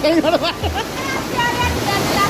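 Small waterfall rushing over rock in a steady roar of water, with people's voices talking over it near the start.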